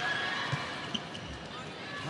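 Indoor volleyball rally: arena crowd chatter, with a dull thud of the ball being played about half a second in and faint high squeaks of shoes on the court.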